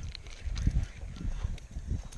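Wind buffeting the camera microphone, a low uneven rumble that rises and falls in gusts.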